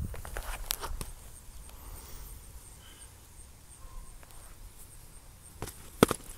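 Foam-padded sparring weapons knocking against each other and a shield: a few sharp knocks in the first second and one more near the end, with footsteps on grass.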